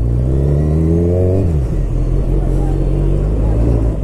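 Kawasaki Z1000 inline-four motorcycle engine heard from on board while riding. The revs climb under acceleration for about a second and a half, then drop sharply as the throttle eases, and the engine runs steadily at lower revs.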